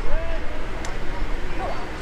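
Scattered shouts and calls from players and spectators around a football field, with a steady low rumble underneath and one brief sharp click a little before halfway.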